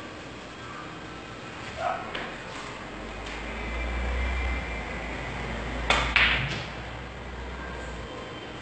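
A pool shot: two sharp clacks a third of a second apart about six seconds in, the cue tip striking the cue ball and the ball hitting another ball on the table.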